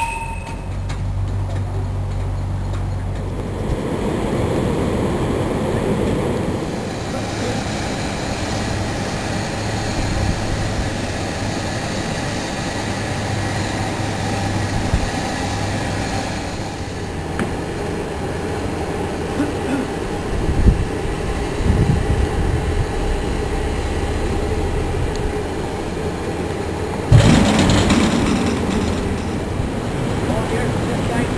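Steam narrowboat under way: a steady low engine hum under a hiss of steam. Near the end there is a sudden louder rush of noise.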